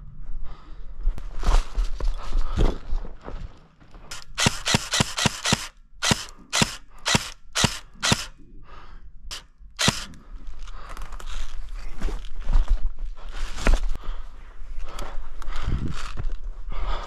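Electric airsoft rifle firing: a quick run of shots about four seconds in, then single shots roughly every half second until about ten seconds in.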